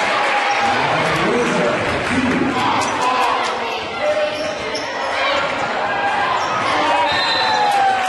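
Basketball game sounds in a gym: the ball bouncing on the hardwood court amid a steady din of crowd and players' voices shouting.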